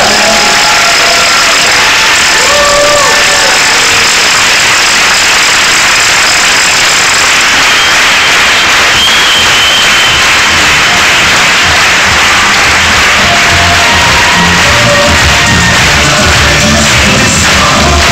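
A standing audience applauding loudly and steadily, with music playing; the music's low beat comes through more strongly in the last third.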